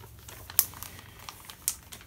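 A clear plastic soft-bait bag being handled, with light crinkling and a couple of sharp clicks, one about half a second in and one near the end.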